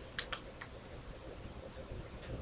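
A few faint, quick clicks just after the start, then a low steady background hiss.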